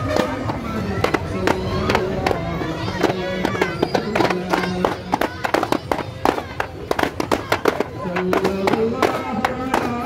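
Hand-held frame drums beaten in a fast, dense rhythm of sharp strikes, with a group of voices chanting a song in unison over them.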